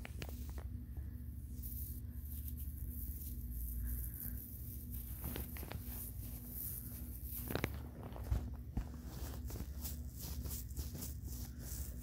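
Irregular close-up tapping and scratching of fingers on a small object held right at the microphone, with a couple of sharper knocks about seven and a half and eight seconds in.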